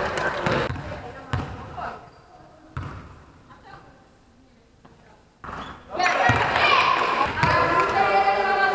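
Basketball bouncing on a sports-hall floor among players' voices in the gym, with a few separate bounces in the first three seconds. A quieter stretch follows, then loud voices from about six seconds in.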